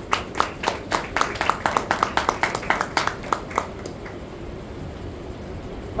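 Light, scattered clapping from a small audience, several claps a second, dying away about three and a half seconds in and leaving faint room noise.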